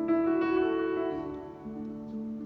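Grand piano playing alone. A loud chord is struck at the start and another about half a second in, both ringing out and fading within about a second and a half, over softer held low notes.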